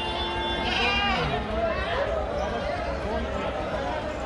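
Young goats bleating, with a curving call about a second in, over the steady voices and chatter of a crowd.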